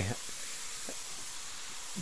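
Pressure washer wand spraying a steady hissing jet of water onto an RV's rubber roof membrane.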